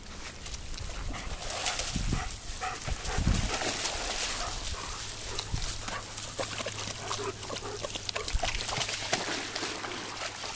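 A pack of German Shepherds playing, with dog vocal sounds over the constant noise of paws moving through shallow water and grass, full of short clicks and scuffs.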